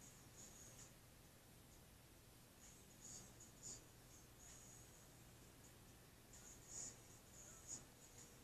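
Near silence: faint room tone with a steady low hum and a few faint, short high-pitched chirps scattered through it.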